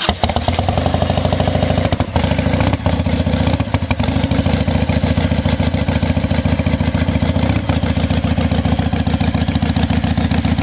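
1998 Harley-Davidson 883 Sportster's air-cooled 45-degree V-twin, carbureted and fitted with aftermarket Vance & Hines pipes, running steadily at a loud, even lope just after being started.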